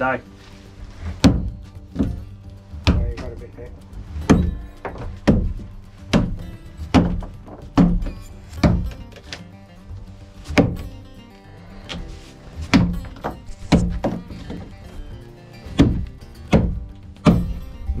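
Long steel bar driven down into a boat's wooden stringer to break it loose from the hull: sharp thuds about once a second, over background music.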